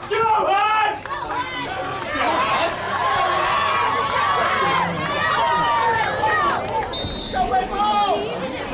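Spectators at a high-school football game shouting and cheering, many voices overlapping, with a brief high steady tone near the end.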